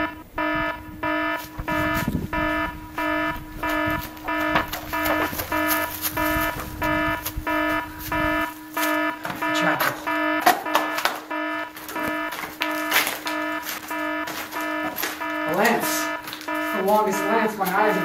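An alarm sounding in an even, repeating rhythm of beeps over a steady low tone.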